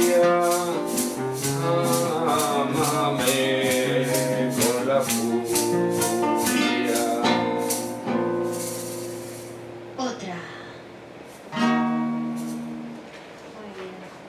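Flamenco song: a woman singing over a Spanish acoustic guitar, with a hand shaker keeping a steady beat of about three shakes a second. The music winds down about eight seconds in with a shaken roll, and one last chord rings out near the end.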